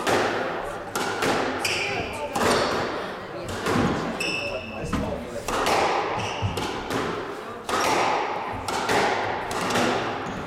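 Squash rally: the ball is struck by rackets and hits the walls, a sharp echoing smack roughly every second, with a few short rubber-sole squeaks on the wooden court floor.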